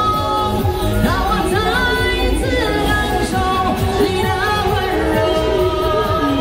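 A woman singing a Chinese pop song live into a handheld microphone over an accompaniment track, both played through a portable amplifier speaker.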